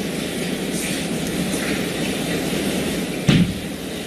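Steady background room noise with a low hum, broken by a single thump a little over three seconds in.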